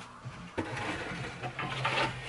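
A thin plywood panel handled against a wooden cabinet frame: light knocks and scraping of wood on wood, over a steady low hum that comes in about halfway.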